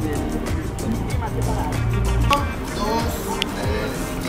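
Background music with a bass line, with people's voices over it.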